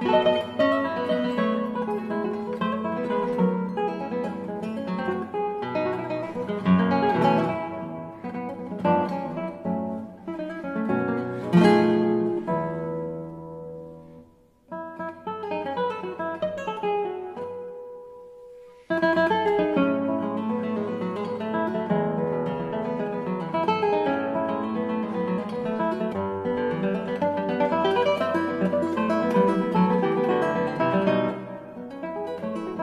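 Solo classical guitar playing a piece: a dense run of plucked notes, then a loud chord about twelve seconds in that rings out and fades. A quieter, sparser passage with a held note follows, and fuller playing returns about two-thirds of the way through.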